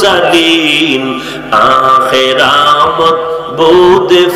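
A man's voice chanting a sermon in a drawn-out, tearful melodic tune through a public-address microphone. He holds long, sliding notes, with short breaths about a second and a half in and near the end.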